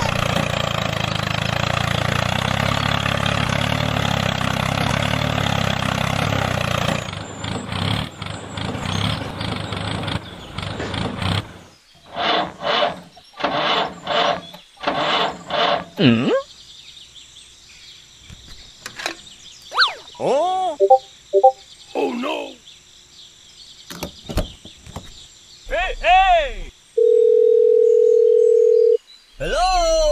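A steady engine-like running sound for about the first seven seconds, then a string of short sound effects and squeaky, wavering cartoon-like voices. Near the end comes a steady two-second phone tone.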